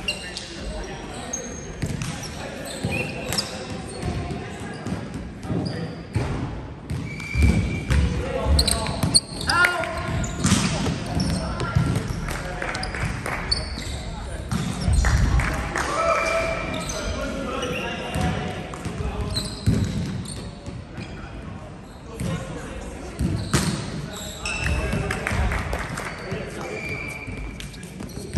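Volleyball players' voices in a large gym hall, with sneakers squeaking in short high chirps on the wooden court and a volleyball bouncing and being hit now and then.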